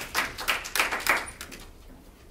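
A few people in the room clapping briefly, uneven claps that die away a little over a second in.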